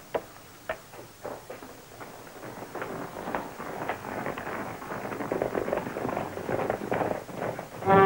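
Quiet film underscore with bowed strings, mixed with irregular short knocks and taps that grow busier and a little louder toward the end.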